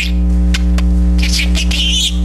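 A talking budgerigar chattering in a high-pitched voice, mostly in the second half, words that its owner renders as "rather be kissing Betty". Under it runs a loud, steady electrical mains hum.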